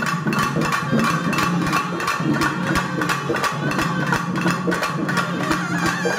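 Ritual drumming: rapid, evenly spaced strokes on a small hand drum with a steady held tone underneath.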